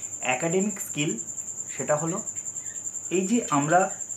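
A man speaking in short phrases, over a steady high-pitched cricket trill that runs on without a break.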